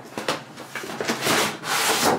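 Cardboard shoe box handled close to the microphone, its cardboard rubbing and scraping, with two long, loud scraping rubs in the second second.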